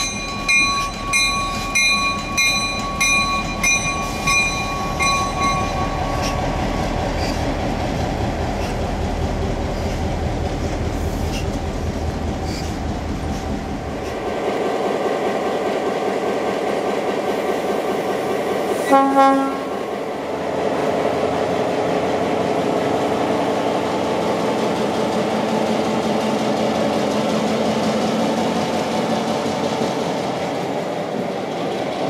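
Locomotive bell ringing about twice a second over the rumble of a passing train, fading out after about six seconds. Later a diesel locomotive runs steadily and gives one short horn blast about two-thirds of the way through.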